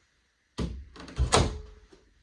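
A door being pushed shut: a knock about half a second in, then a louder thud with a brief ring that dies away.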